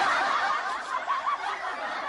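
Audience laughter from a laugh track: many people laughing together at once, loudest at first and easing down a little after about a second.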